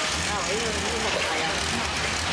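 Boat engine running with a low, steady rumble under people talking.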